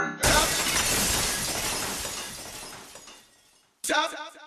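A breaking-glass crash used as a sound effect in an electronic dance track: it starts suddenly with the beat cut out and fades away over about three seconds into silence. A short vocal sample comes in near the end.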